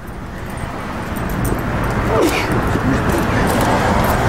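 Road traffic noise from a passing vehicle, building up steadily, with a brief falling whine near the middle.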